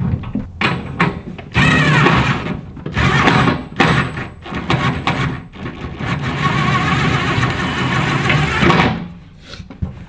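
DeWalt cordless drill-driver running in several short bursts as it spins bolts in, then one longer run that stops about a second before the end.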